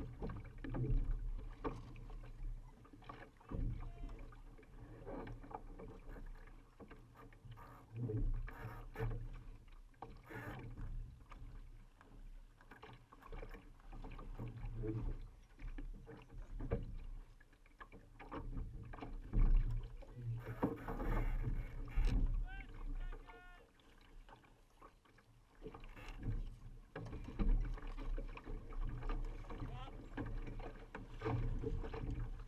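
Laser dinghy under sail: water rushing and splashing along the hull, with uneven low buffeting that comes and goes and scattered short knocks from the boat and its rigging.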